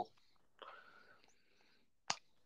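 Near silence, broken by a faint, breathy whisper-like voice sound from about half a second in that lasts a little over a second.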